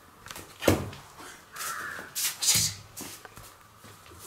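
Indian crested porcupine moving about on a hard floor: a sharp knock about two-thirds of a second in, then harsh, raspy bursts around two to two and a half seconds in, typical of its rattling quills.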